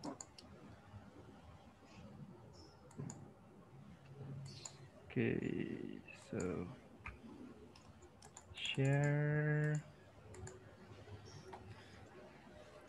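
Computer keyboard typing and mouse clicks over a video call, with faint murmured voice sounds and a steady one-second hum about nine seconds in, which is the loudest sound.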